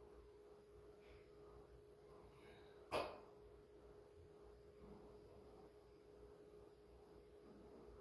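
Near silence: room tone with a faint steady hum, broken once about three seconds in by a single short, sharp sound.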